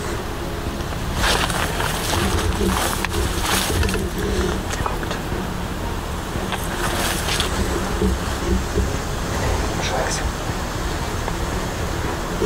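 Grass and leafy branches rustling and swishing as someone pushes through dense undergrowth, in a few short bursts over a steady low rumble.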